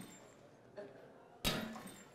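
A single sharp slam-like impact about one and a half seconds in, dying away over about half a second, against quiet room tone.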